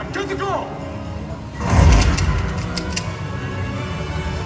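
Jet-ski engines revving in rising-and-falling sweeps over show music, then a loud rushing burst about two seconds in, followed by a few sharp cracks.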